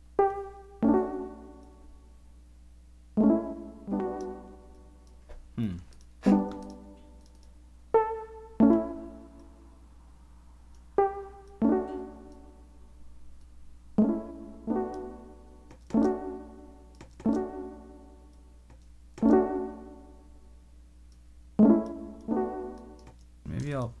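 Synthesizer keyboard notes and chords played back in a loose repeating phrase. Each note has a sharp start and dies away quickly, its sustain pulled back by a transient shaper. One note about five seconds in slides down in pitch.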